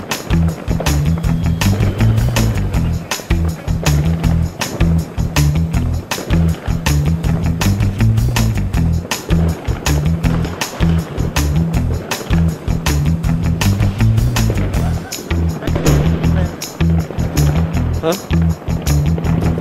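Background music with a steady beat and a heavy bass line.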